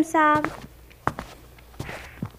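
A few light, sharp taps of a plastic doll being walked across a toy set, standing in for footsteps.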